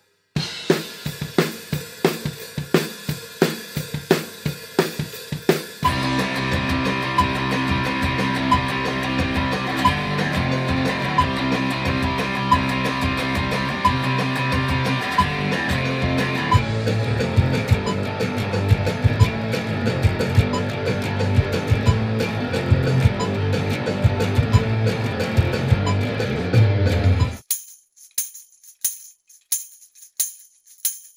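A fast punk-rock beat on a drum kit plays alone for about six seconds. Distorted electric guitar and bass then join in a full-band rock track. It cuts off suddenly near the end, leaving a tambourine struck and shaken in rhythm.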